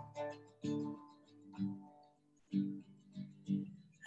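Acoustic guitar played alone, softly picked chords struck about six times, each left to ring and fade with short gaps between, heard over a video call.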